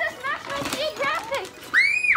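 Excited children's voices and chatter, ending in a loud, very high-pitched squeal near the end.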